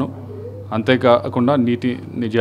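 A man speaking in Telugu, with a short pause and a faint, wavering low hum at the start before his speech resumes.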